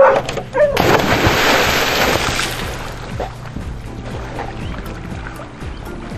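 A big splash about a second in as a rescue handler and a dog in a life vest jump off a jetty into lake water together, the spray fading away over the next two seconds, with background music.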